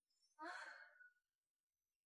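A woman lets out one short, breathy sigh about half a second in.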